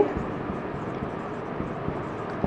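Steady background noise, an even hiss with no clear events, filling the room between spoken sentences.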